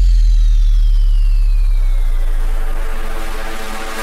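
Electronic dance music breakdown: a deep sub-bass note held and slowly fading, under a high-pitched sweep effect that glides downward over the first couple of seconds.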